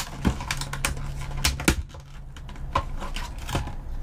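Clear plastic packaging being opened and handled: a run of irregular crinkles and sharp clicks.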